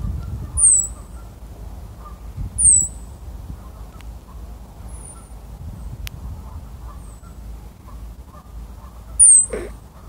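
Richardson's ground squirrels giving alarm calls: short, high-pitched chirps, each falling in pitch, five in all about two seconds apart, the middle two fainter. The calls are their warning at a red fox, a predator.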